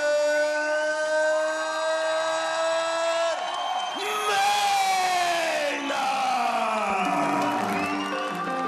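A ring announcer bellowing the winning boxer's name in long drawn-out notes: one note held for about three seconds, then two more that slide down in pitch, over crowd cheering and music.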